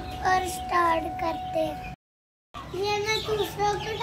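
Half-grown chickens calling in a run of short, repeated pitched notes, several a second, broken by a sudden half-second gap of silence about halfway through.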